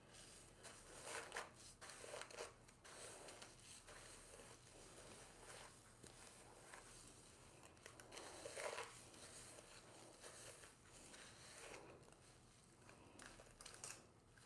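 Faint, irregular scratchy strokes of a paddle detangling brush being drawn through thick natural hair.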